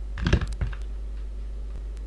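A quick cluster of clicks from computer keys and mouse buttons, several in the first half second, over a steady low hum.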